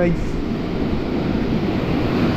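Surf washing up the sand at the water's edge, a steady rushing hiss, with wind on the microphone.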